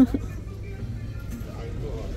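A woman's short laugh, then faint background music over a low steady hum of store ambience.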